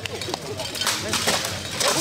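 Several irregular sharp knocks of steel weapons and plate armour striking during a full-contact armoured fight, with faint voices in the background.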